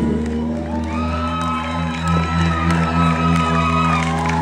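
A live rock band holding its final chord, with a steady high guitar tone ringing over a held bass note, while the crowd cheers and whoops.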